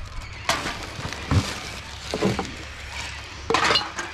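Plastic shopping bag rustling as it is pulled open in a wheelie bin, with a few sharp knocks and clinks from the rubbish inside it.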